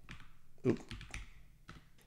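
Computer keyboard keys clicking as a handful of irregularly spaced keystrokes type out a word.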